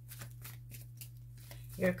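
A tarot deck being shuffled by hand: a quick run of soft papery card flicks, over a steady low hum.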